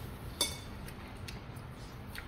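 A metal spoon or fork clinks once sharply against tableware about half a second in, with a brief ring, followed by a few faint taps of cutlery during the meal.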